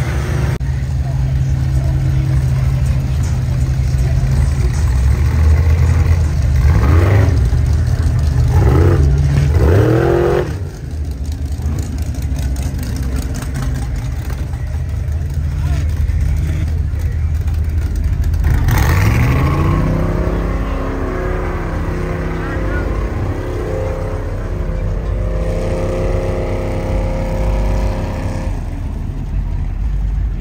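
Off-road vehicle engines running and revving. A steady low engine note is broken by a few quick revs in the first ten seconds. About nineteen seconds in, another engine winds up in pitch and holds a higher note.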